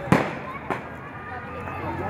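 Two sharp bangs about half a second apart, the first the louder, over the chatter of a crowd.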